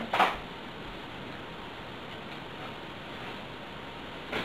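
Steady background hiss of a quiet room, with a brief soft noise at the very start and no other distinct sound.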